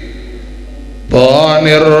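A man's voice chanting a melodic religious recitation through a microphone and PA: after a pause of about a second filled only by a steady electrical hum, he comes back in with a loud, long held note that wavers slightly in pitch.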